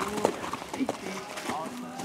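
Horse's hooves striking sandy ground, a few separate thuds, as it lands over a small log jump and canters away, with voices talking in the background.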